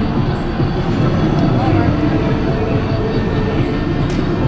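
Loud, steady arcade din: a continuous low rumble with indistinct background voices, and no single event standing out.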